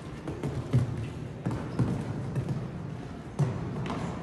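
Hoofbeats of a show-jumping horse cantering on sand arena footing: a run of dull thuds at an uneven pace.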